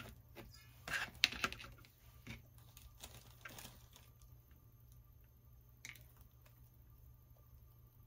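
Hands handling and sorting cut-off buds and stems on a craft table: a few soft clicks and rustles in the first four seconds, with one more faint click near six seconds.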